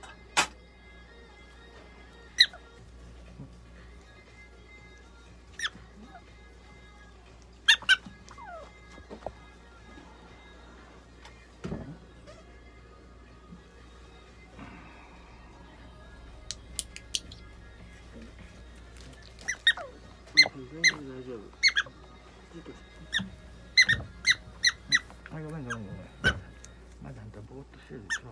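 A prairie dog giving short, sharp, high-pitched squeaks while it is held and its mouth is treated for an abscess under the tongue. Some squeaks fall in pitch. They come every few seconds at first, then crowd together in a quick run near the end.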